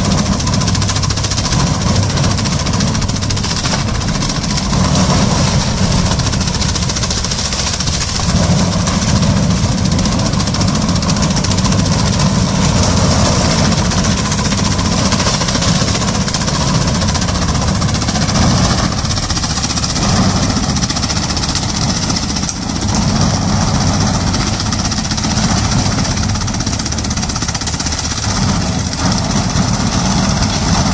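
Tractor engine running under load, driving a rear-mounted rotary mulcher that shreds banana stalks and leaves; a loud, steady mechanical din of engine and chopping, dipping briefly a little past two-thirds of the way through.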